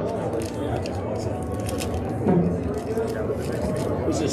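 Indistinct talking, with a few short sharp clicks scattered through it.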